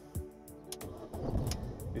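A BMW Mini's engine being started: a click about a quarter second in, then the engine cranks and fires up about a second in and settles. Background music plays underneath.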